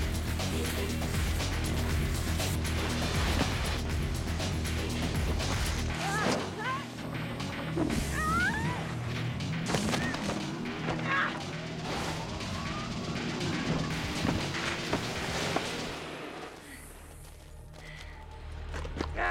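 Film action-scene soundtrack: a driving music score with a steady bass. From about six seconds in it is mixed with short squealing glides and sharp hits. The whole mix drops in level near the end.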